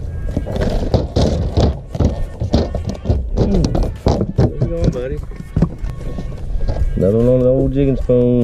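Irregular thumps of a freshly landed bass flopping on a boat deck, over background music, with a held humming tone near the end.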